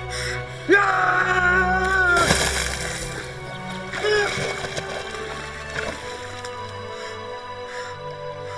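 Dramatic background score runs throughout. About a second in, a man gives a long, loud yell. It breaks off into a short rush of noise, and a briefer cry follows a couple of seconds later.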